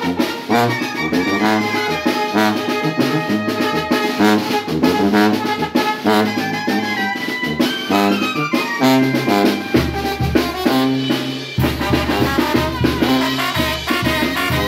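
Small Mexican brass band (banda) playing live: a sousaphone carries the bass line under trumpets, trombone and clarinet, in a steady rhythm.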